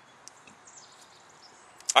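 Quiet, light handling of a small plastic fuel bottle: a faint click and some soft, thin scratching. A man starts to speak near the end.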